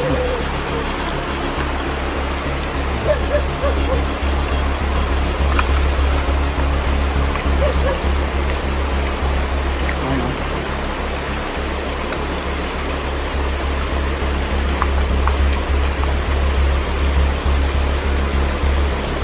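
A shallow rocky stream running steadily.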